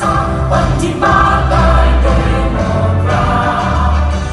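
A large group of voices singing together, choir-like, with instrumental accompaniment and a strong bass, as if over a hall's sound system.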